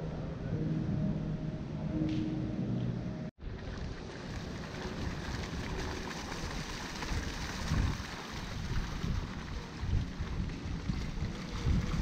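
A fountain jet splashing into a pool outdoors, with wind buffeting the microphone in irregular low rumbles. A few low held tones in the first three seconds cut off abruptly before the splashing takes over.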